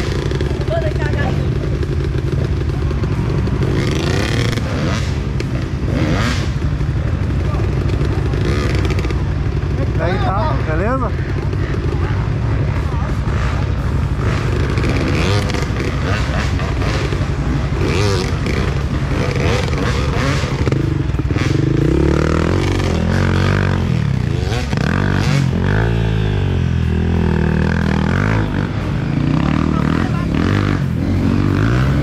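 Dirt bike engines running at low revs as the bikes are worked up a steep muddy climb. Near the end the revs rise and fall several times in quick succession.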